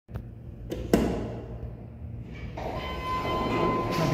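An elevator hall call button pressed with a sharp click about a second in, over a steady low hum. Then a rising rumble of the car and doors working, with a steady high tone for about a second near the end.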